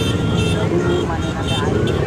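Busy street noise from a packed crowd and many motorcycles: motorcycle engines running with many voices talking over each other.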